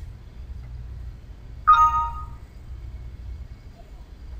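A short Windows system chime about one and a half seconds in, a couple of clear tones fading out in under a second, marking an information dialog box popping up in the installer. A low steady hum runs underneath.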